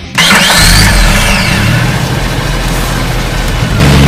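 A vehicle engine starting with a sudden loud burst about a quarter second in, then running steadily with a low drone.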